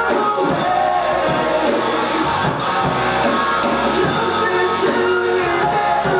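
Live rock band playing at full volume: electric guitar, bass and drum kit, with a male lead singer's voice over them.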